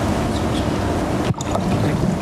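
Handheld microphone handling noise, a steady loud rushing hiss with a brief dropout a little after a second in.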